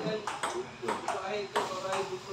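Table tennis rally: a celluloid ping-pong ball struck by paddles and bouncing on the table, three sharp clicks about two thirds of a second apart.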